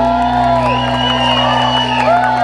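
A rock band's electric guitar and bass holding a sustained closing chord, with audience members whooping and cheering over it as the song ends.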